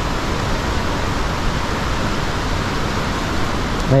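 Steady rushing noise of surf breaking along a sandy beach.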